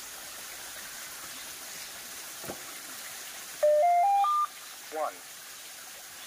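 A mobile phone sounds a short electronic chime of four steady tones stepping up in pitch, about halfway through. A small stream trickles over rocks underneath it.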